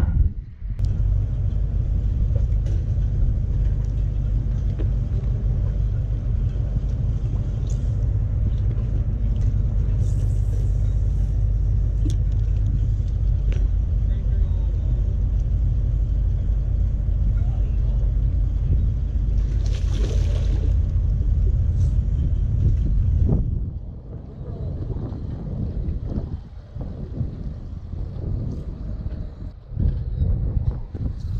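A low, steady engine rumble that cuts off suddenly about three-quarters of the way through, leaving quieter, uneven noise.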